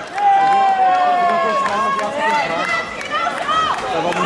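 Several people shouting over one another at a kickboxing bout: spectators and corner coaches calling out to the fighters. One long drawn-out shout, slowly falling in pitch, starts just after the beginning.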